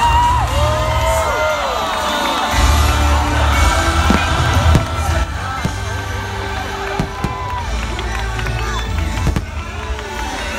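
A fireworks show: loud show music playing over a cheering, whooping crowd, with deep booms from the firework bursts underneath and a few sharp cracks.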